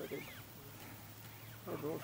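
Onlookers' voices, briefly at the start and again near the end, with a short high wavering call in the first half second and a steady low hum underneath; the middle is quieter.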